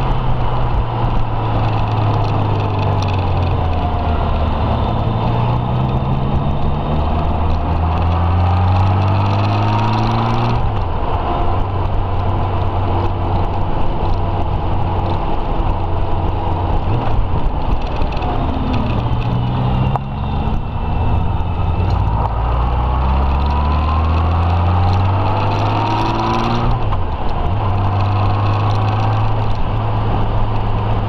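Touring motorcycle engine pulling along a road, its pitch climbing steadily and then dropping sharply several times as the rider changes gear or eases the throttle, over steady wind and road rush.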